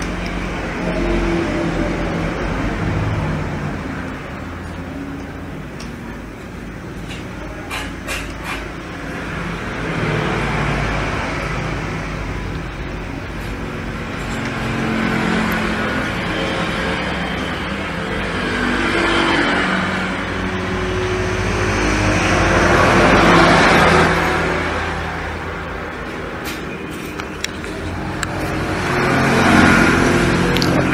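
Motor vehicles passing by, their engine noise swelling and fading several times, loudest about two-thirds of the way through. A few light clicks and knocks from handling the laptop now and then.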